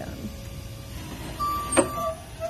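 Raymond electric stand-up reach truck moving, a low steady rumble of its drive, with a steady high tone coming in a little past halfway and a sharp click near the end.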